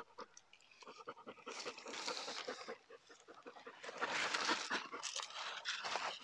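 A dog panting in two spells, the second starting about four seconds in.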